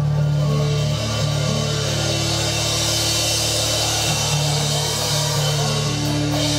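A live progressive melodic black/death metal band playing loudly: distorted guitars and bass holding low notes over drums with constant cymbals. There is a sharp hit right at the start.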